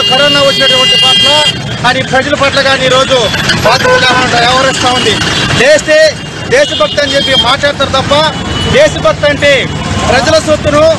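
A man speaking Telugu close to the microphone, with road traffic behind him. A steady high tone sounds under his voice for the first second and a half, then stops.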